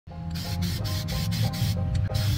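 Aerosol spray paint hissing from a can in several short bursts, over background music with a steady bass line.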